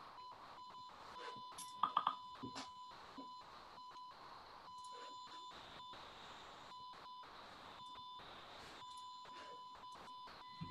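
A faint, steady, thin electronic tone that keeps dropping out for brief moments, with a few short clicks about two seconds in.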